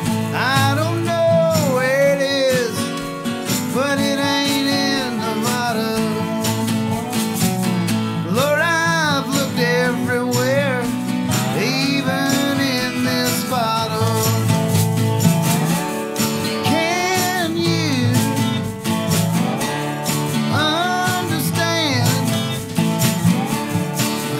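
Live acoustic country song: a man singing over a strummed acoustic guitar, a dobro played with a slide, and a Craviotto wooden snare drum played with brushes in a steady beat.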